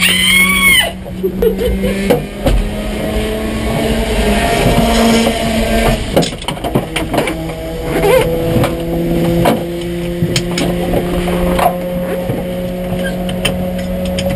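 Modified Mazda RX-7 (FD) engine idling steadily while parked, heard from inside the cabin. A woman's brief high call sounds in the first second.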